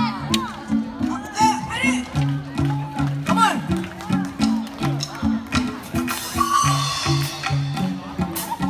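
Live band playing upbeat dance music, with a repeating bass line, drum kit and congas, and people's voices over it.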